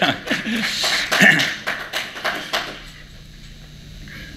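Brief laughter that dies away about two and a half seconds in, leaving quiet room tone.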